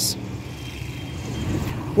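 Low rumbling background noise, like a vehicle passing, swelling slightly toward the end, with a faint steady high whine through the middle.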